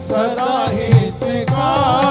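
Live Hindu devotional bhajan music: a wavering sung melody over steady hand-drum beats and accompanying instruments.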